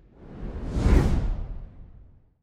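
Whoosh sound effect of a logo transition: a deep, rushing swell that builds to a peak about a second in and then fades away.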